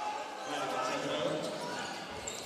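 Sports hall ambience with a faint voice calling out, echoing in the large room.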